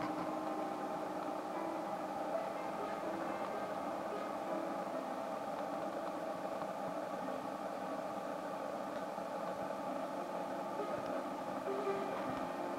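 Live band playing a droning instrumental passage: held notes that shift every few seconds, with no clear drumbeat.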